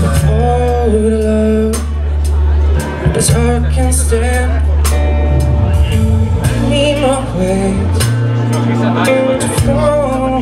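Live blues band playing: electric guitar, electric bass, keyboard and drum kit, with held bass notes under bending guitar lines and regular cymbal strikes.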